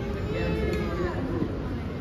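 A young child's high, wavering whine, falling in pitch about a second in, over the murmur of a crowded hall.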